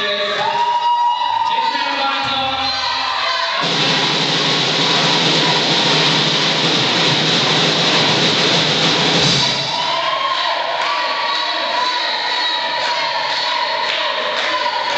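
Live rock band playing, with sung vocals over electric guitar, bass guitar and drums; from about four seconds in, a dense, loud wash of sound swamps the vocals for around five seconds, then the sung lines come back.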